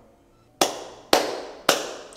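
One person's slow hand claps, three sharp claps about half a second apart after a brief silence, each followed by a short room echo.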